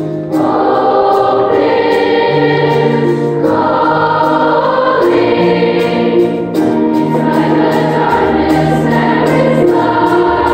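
Large children's choir singing a slow piece in sustained phrases, new phrases beginning about every three seconds.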